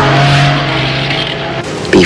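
Chainsaw engine running at a steady high pitch, dying away near the end.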